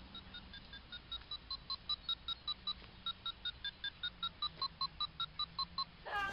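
A simple tune of short, evenly spaced electronic beeps, about five notes a second, stepping up and down in pitch, in two phrases with a brief pause about halfway.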